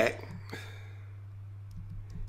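Faint computer keyboard clicks, one about half a second in and a few more near the end, over a steady low electrical hum.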